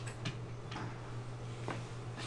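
A few light ticks of a stylus tapping on a pen tablet while a minus sign is written, over a steady low hum.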